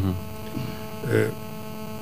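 Steady electrical mains hum carried in the studio audio, with a brief murmur from a man's voice just after a second in.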